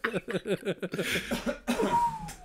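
A man laughing in quick repeated bursts that break into coughing from an itchy throat.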